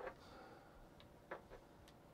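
Near silence broken by a handful of light clicks and taps, clustered in the second half, from handling a plastic smart card and a smartphone.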